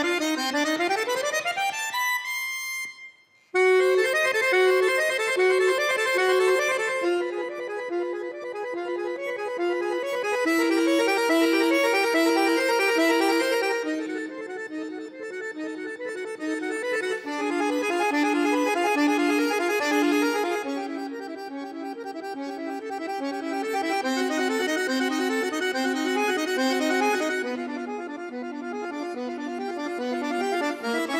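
Solo bayan, the Russian chromatic button accordion, playing. It opens with a quick rising run onto a held high note, breaks off briefly about three seconds in, then goes on with a fast, steady passage of repeated notes over a moving bass line.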